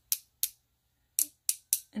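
Paintbrush handle tapped against another brush handle to flick ink splatter onto the paper: five sharp, light clicks at uneven intervals.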